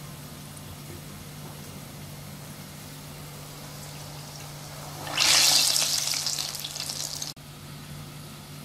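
Medu vada of soaked urad dal batter dropped by hand into hot oil: a sudden loud sizzle about five seconds in that fades over a couple of seconds and then cuts off abruptly.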